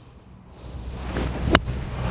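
An eight iron strikes a golf ball on a short, roughly hip-high drill shot, a single sharp click about one and a half seconds in. It comes over a background hiss that builds from about half a second in.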